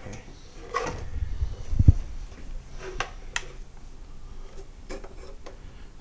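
Handling noise from a vintage tabletop radio cabinet being turned over: a few light clicks and taps, with one low thump about two seconds in.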